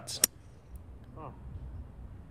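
A 4 hybrid striking a golf ball off the fairway: one sharp click about a quarter second in, then only faint outdoor background.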